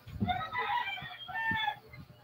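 A rooster crowing faintly: one drawn-out call with a short break partway through.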